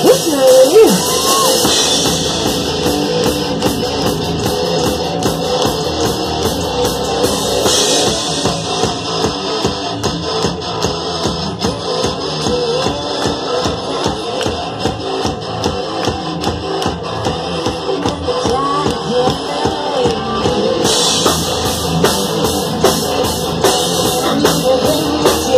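Hard rock band playing live: distorted electric guitar, bass guitar and a drum kit keeping a steady beat, with cymbal crashes near the start, about eight seconds in, and over the last few seconds.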